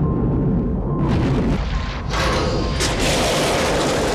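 Film soundtrack: dramatic music over a deep, continuous rumble, with a rushing hiss that swells about a second in and again from about two seconds on, as the undersea base starts to give way under the pressure.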